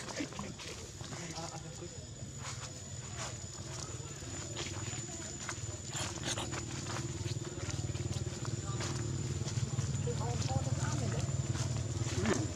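Footsteps crunching and crackling through dry leaf litter, in many short irregular crackles, over a steady low hum.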